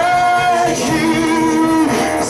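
A man leading a worship song into a microphone over instrumental accompaniment, holding one long note and then a lower one.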